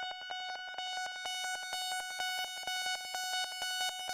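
Synthesizer tone held on one high pitch, pulsing rapidly and evenly, as a short closing sting.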